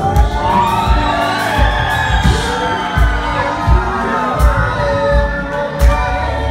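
Live band with bass guitar playing under a male singer's long, gliding held notes, over a steady low beat.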